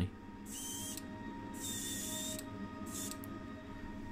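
Airbrush spraying paint in several short hissing bursts, each about half a second to a second long, over a steady low hum.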